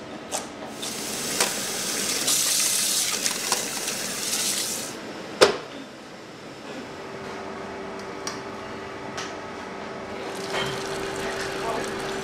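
Kitchen cooking sounds: a couple of knife chops on a cutting board at the start, then water running for about four seconds, and a single sharp metal clank about five seconds in. From about seven seconds a steady hum sets in, and near the end liquid pours and drains through a sieve.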